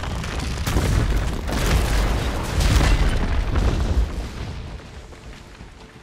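A huge steel structure collapses onto the tarmac: a deep, rumbling crash with debris clattering through it, swelling several times and loudest about three seconds in, then dying away over the last two seconds.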